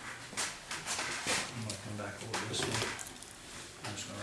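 Low, indistinct talk with short scraping and rustling knocks as rope lashings and birch poles are handled and worked tight.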